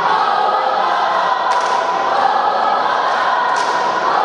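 Cheer squad of many voices chanting together in unison, loud and continuous, with a sharp hit about a second and a half in and again near the end.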